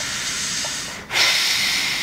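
A man breathing close to the microphone: a long hissing breath drawn in, then, after a short break about a second in, a louder breath blown out that fades slowly.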